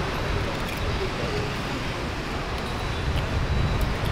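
Steady low rumble and hiss of background noise, with no clear crunching standing out.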